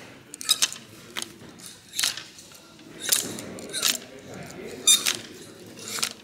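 Metal hanger hooks scraping and clinking along a metal clothes rail as garments are pushed aside one after another, a sharp clink or scrape roughly once a second.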